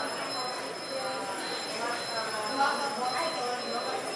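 Café room sound: indistinct chatter of other customers, with a faint high-pitched tone pulsing on and off.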